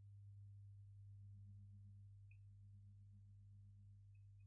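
Near silence apart from a faint, steady low hum.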